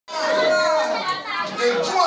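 A man's voice praying aloud, beginning with one long held call before breaking into quicker, uneven speech.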